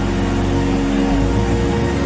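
Held music chords over a deep, steady bass drone, with the mixed voices of a congregation praying aloud all at once underneath.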